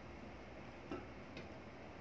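Quiet room tone with one faint click about a second in.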